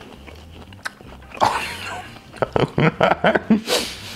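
A person biting into and chewing a shrimp close to the microphone: a noisy bite about a second and a half in, then a run of short chewing clicks.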